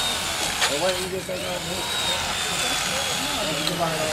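Indistinct voices of several people over a steady mechanical whirr.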